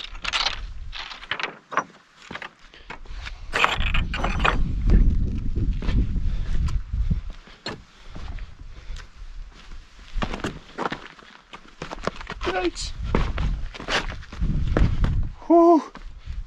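Footsteps in hiking shoes crossing loose scree and then onto quartzite boulders, small stones clicking and knocking underfoot at an irregular pace. A low rumble runs under the steps, loudest a few seconds in.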